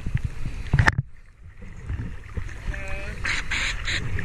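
Sea water sloshing and slapping against a waterproof camera bobbing at the surface beside a dive boat. About a second in the sound goes dull for a moment as the water closes over the lens, then returns with splashing near the end. A short pitched call, like a distant voice, comes just before three seconds.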